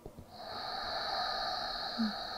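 A slow, steady exhale through the nose, starting about a third of a second in and running on: the four-count exhale of a box-breathing (sama vritti pranayama) round.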